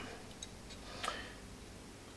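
Faint clicks of small steel parts being handled and fitted into a Colt Mustang pistol frame, twice: about half a second in and again just after a second.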